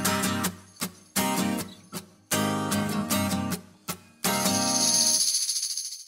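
Steel-string acoustic guitar strumming the closing chords of a song: a few strummed chords separated by short breaks, then a last chord left to ring and fade out.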